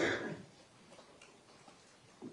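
A short noisy burst at the very start, like a knock or a rustle against a microphone, then quiet courtroom room tone with a few faint ticks.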